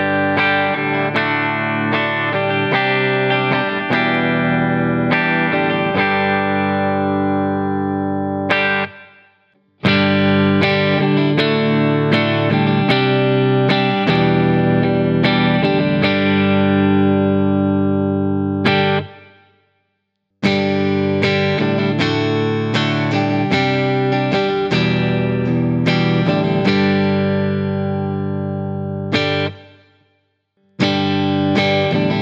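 Enya Nova Go Sonic carbon-fibre electric guitar played clean through a Roland Jazz Chorus–style amp model with the chorus off and a little reverb. Three short passages of chords, each left to ring out and fade, break off briefly about ten and twenty seconds in. The passages are played first on the bridge pickup, then on the neck pickup with its coils in series, then with its coils in parallel.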